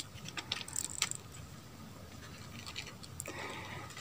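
Faint scattered clicks and rustles, busiest in the first second or so, then only a low, even background hiss.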